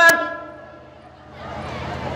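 A man's amplified voice through a public-address microphone; its last held sound fades away over about half a second. A pause follows, with a low hum and a faint hiss that grows near the end.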